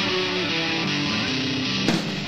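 Amplified electric guitar played live, picking the opening notes of a rock song with the notes ringing into each other and no drums yet; a sharp strike comes near the end.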